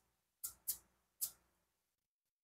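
Kitchen knife cutting through a cucumber held in the hand, three crisp snaps within about a second.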